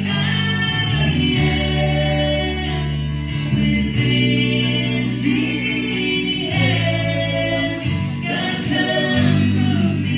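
Live worship band playing a slow gospel song: strummed acoustic and electric guitars under voices singing together, led by a woman's voice.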